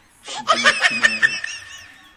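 People laughing: a burst of laughter starts about a quarter second in and fades away before the end.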